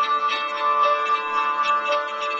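Live acoustic folk band playing an instrumental passage between sung lines: plucked string notes over steady held tones.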